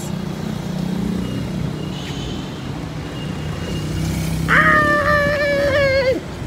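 City street traffic: road vehicles running and passing, a steady low hum. About four and a half seconds in, a voice calls out a long, held 'Ah!', the loudest sound.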